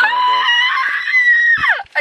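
A woman's long, high-pitched scream, held steady for about a second and a half and sliding down in pitch at the end.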